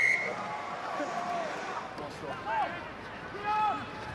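A referee's whistle blast, one steady high note, ends just after the start. After it comes stadium crowd noise with a few scattered shouting voices.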